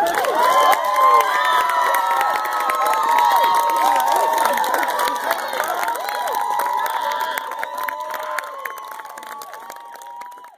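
A crowd cheering and clapping at the end of a song, with many overlapping high shouts and whoops. The cheering dies down over the last few seconds.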